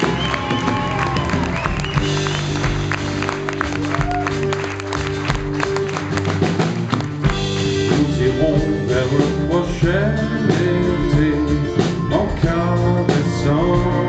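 Live acoustic band playing a song: steel-string acoustic guitars, upright double bass, accordion and drum kit.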